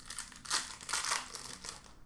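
Crinkling and tearing of a hockey card pack's wrapper as it is ripped open, with two louder bursts about half a second and a second in.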